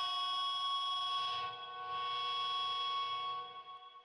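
Music: the rock song's last chord ringing on as a sustained chord. It dips briefly about a second and a half in, then fades away just before the end.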